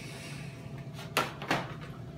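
Two sharp knocks about a third of a second apart, a little past a second in, from kitchen utensils or fittings being handled, over a steady low hum.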